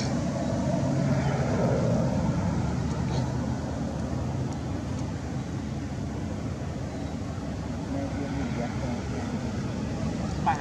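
A steady low rumble, with a faint humming tone now and then.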